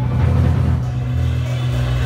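Live rock band playing loud amplified music, an electric guitar over low bass notes that change every half second or so.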